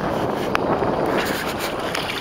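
Wind buffeting the microphone over choppy open water, a steady rushing noise, with a single sharp click about half a second in.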